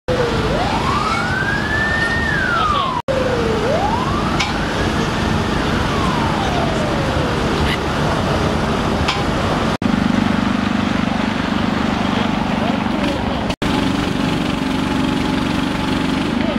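An emergency-vehicle siren wailing twice, each cycle rising slowly in pitch and then falling away, over loud steady street noise. Later a steady low hum sits under the street noise, and the sound cuts out for an instant three times.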